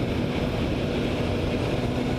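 Sport motorcycle engine running steadily at low revs, held in a high gear to let the overheated engine cool, with wind noise on the microphone.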